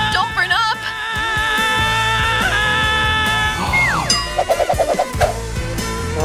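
Comedy sound effects over background music: a long held, slightly wavering tone, then about four seconds in a quick falling whistle-like glide and a short rapid boing-like wobble.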